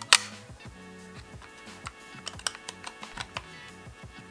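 Background music with a steady beat, with sharp plastic clicks of a clear acrylic enclosure and a power-bank circuit board knocking together as they are fitted by hand. One loud click comes right at the start, and a few lighter ones come about two and a half and three and a half seconds in.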